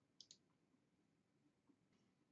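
Near silence, broken about a fifth of a second in by a faint computer mouse click: two quick ticks close together.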